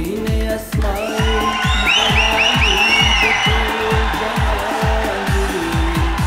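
Live pop song with a fast, steady kick-drum beat and a male singer; about a second in, the audience cheers over the music for two or three seconds.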